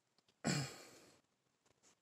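A man's sigh about half a second in: a short breathy exhale with a low voice falling in pitch, fading away within about half a second.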